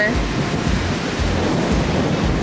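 Strong wind buffeting the microphone in uneven, rumbling gusts, over the steady wash of rough surf breaking on a rocky shore.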